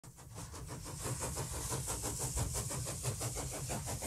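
A steam engine running, its regular exhaust beats coming about seven times a second over a hiss, fading up from silence.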